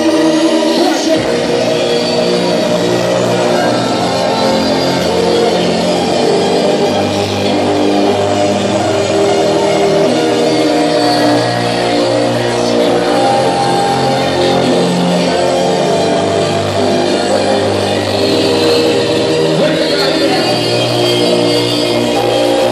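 Loud hardstyle dance music from a club sound system during a live DJ set, with a high rising sweep that tops out about a second in.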